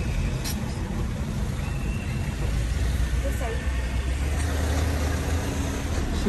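Steady low rumble of a car's engine and tyres on the road, heard from inside the cabin while it drives.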